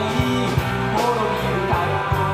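Rock band playing live through a PA: electric guitars, bass guitar and drum kit, with cymbal crashes at the start and about a second in.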